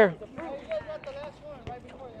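Faint voices of players calling on an outdoor basketball court, with scattered light taps of footsteps and play on the concrete.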